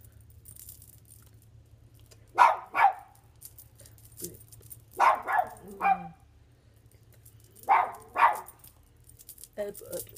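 A dog barking in short runs of two or three barks, a run about every two and a half seconds, over a faint steady low hum.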